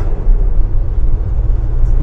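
A loud, steady low rumble inside the van's cab, as loud as the speech around it.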